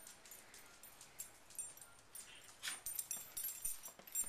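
A puppy pushing a plastic cup across concrete with her nose: irregular clicks and knocks of the plastic on the ground, more frequent in the second half.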